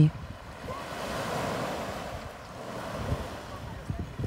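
Sea surf washing onto the shore, a steady rush of breaking waves that swells about a second in and then eases off.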